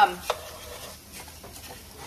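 Wooden spatula stirring cauliflower rice in a nonstick frying pan, with a faint sizzle of the frozen, watery rice frying.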